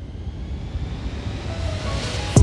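Background music at a break between passages: a slowly rising noise swell with no notes, a single held note coming in near the end.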